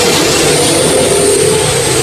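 A motor vehicle's engine running close by: a steady loud noise with a low hum and a thin high whine held through it, covering the talk.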